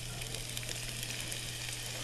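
Diced onion sizzling in hot olive oil in an enamelled cast-iron pan: a steady, even hiss.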